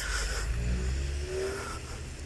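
Road traffic at an intersection: a car engine accelerating away, its note rising slowly, over a steady low rumble.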